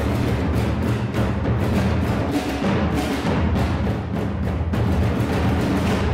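Large bass drums beaten with soft felt mallets in a fast, steady, pounding rhythm, with a deep sustained rumble underneath.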